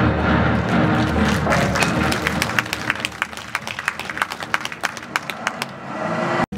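Audience clapping that starts about a second and a half in and thins out to scattered claps, while the film's title music fades out underneath in low held chords.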